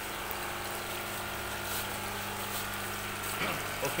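Electric water pump of an aquaponics system running, a steady hum with water flowing through the tanks.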